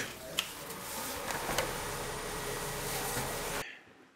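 Steady mechanical background noise with a couple of faint clicks, cut off abruptly near the end.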